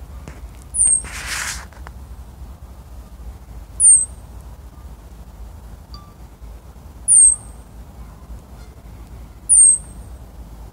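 Richardson's ground squirrels giving alarm calls at a red fox: four short, high-pitched chirps, each dropping in pitch, spaced about three seconds apart. A brief burst of noise follows the first call.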